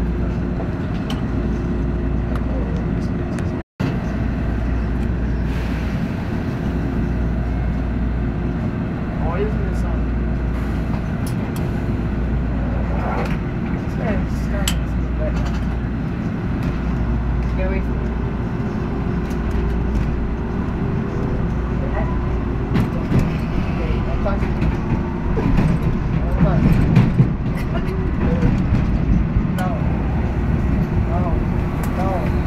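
Toronto subway train (TTC H6 car) running through a tunnel, heard from inside the car: a steady low rumble of wheels on rail with a constant motor hum and occasional faint squeals, growing louder in the last ten seconds.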